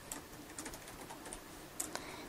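Computer keyboard typing: a quick, irregular run of faint keystrokes.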